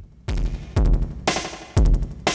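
Electronic drum loop at 120 BPM playing through Ableton Live's Roar effect set to feedback mode. Its hits, about two a second, are thickened by distorted delay repeats.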